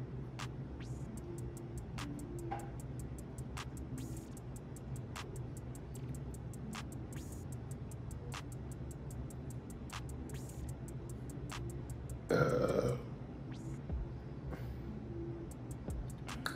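Chewing of sushi with many small wet mouth clicks, over quiet background music, and one loud burp about twelve seconds in.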